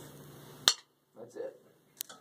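A single sharp click about two-thirds of a second in, after which the sound drops to near quiet, with a few faint soft sounds and a small tick near the end.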